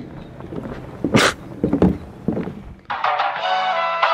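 Thuds and knocks of footsteps and handling on a wooden dock, with one sharp knock about a second in. Background music with guitar starts suddenly about three seconds in.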